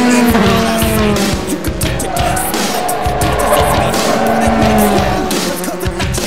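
Formula 3 race car engines running at high revs as the cars go through a corner, the engine pitch sliding down twice as they pass or brake, mixed with background rock music.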